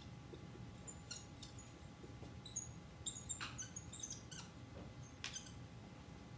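Dry-erase marker writing on a whiteboard: a string of short, high squeaks and scratches as letters and arrows are drawn, in clusters with brief pauses between strokes.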